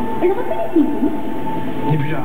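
Amplified soundtrack of a night-time multimedia show: a steady high tone over a low drone, with sliding, swooping tones passing through.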